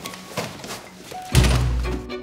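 An apartment door slammed shut: one heavy thud about a second and a half in, over light background music with plucked notes.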